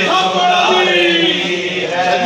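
Male voices chanting a noha, a Shia mourning lament, with long held notes that step from one pitch to another.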